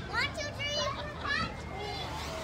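Young children's voices calling out and shouting while playing: several short, high-pitched calls that rise and fall in pitch, without clear words.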